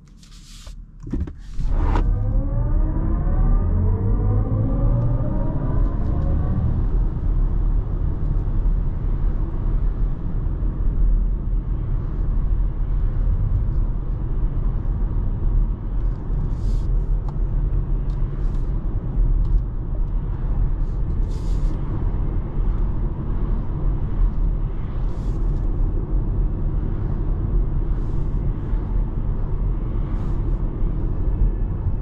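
BMW iX1 electric SUV accelerating from a standstill, heard from inside the cabin: its electric drive sound rises in pitch for about five seconds as the car picks up speed. It then settles into a steady tyre and road rumble at cruising speed, with a few cars whooshing past.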